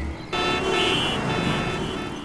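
Busy city road traffic: vehicles running with several car horns honking. It comes in about a third of a second in and fades out near the end.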